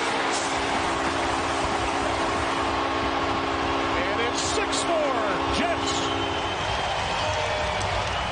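Arena goal horn sounding a steady multi-tone chord over a cheering, clapping crowd; the horn cuts off about six and a half seconds in while the crowd keeps cheering.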